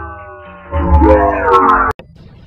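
Digitally effect-processed voice from the Oreos meme, pitch-warped into stacked echoing copies. After a quieter fading tail, it comes back loud and slides up and then down in pitch, then cuts off abruptly just before the end.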